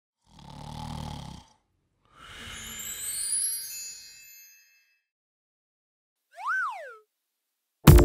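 Cartoon intro sound effects: a short noisy whoosh with a low rumble, then a shimmering spray of high tones that fades away, then a single pitch glide that rises and falls like a cartoon boing. Loud children's song music cuts in right at the end.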